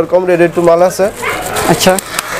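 A voice on drawn-out notes held at a steady pitch through the first second, then crinkling plastic wrap as wrapped packs of lungis are handled and pulled from a shelf.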